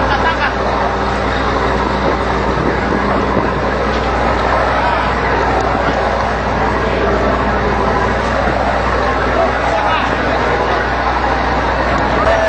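Steady low rumble of a ship's machinery with wind noise, under indistinct voices of people working on deck.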